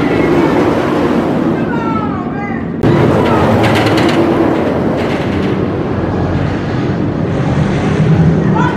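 Rocky Mountain Construction (RMC) roller coaster train running along its track with a loud, continuous rumble, with rattling clicks around the middle and riders' voices over it.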